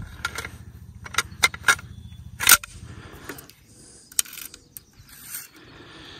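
Metal clicks and scraping as the bolt carrier and recoil spring of a PSA JAKL 300 Blackout rifle are slid back into its upper receiver. A few sharp clicks come in the first three seconds, the loudest about two and a half seconds in, then softer sliding and scraping.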